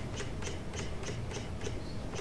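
Computer mouse scroll wheel clicking evenly, about six clicks a second, as pages are scrolled, over a low steady hum.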